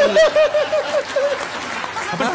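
Studio audience laughing and applauding, with one loud laugh in quick ha-ha pulses, about six a second, that stops about one and a half seconds in.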